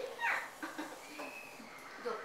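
A young child's wordless vocalising: a short rising squeal near the start, then a few quieter voice sounds.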